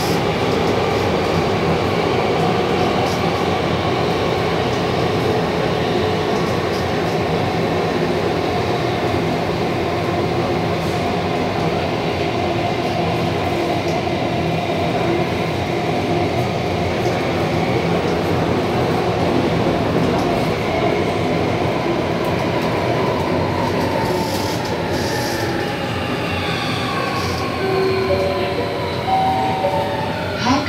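Alstom C751C metro train heard from inside the car, running at speed with a steady rumble and motor whine. Over the last several seconds the whine falls in pitch as the train slows into a station.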